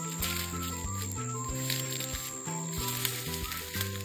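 Background music: held notes over a bass line, changing pitch in steps every fraction of a second.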